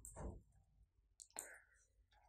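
Near silence: the faint tail of a spoken word at the start, then a single faint click a little past a second in.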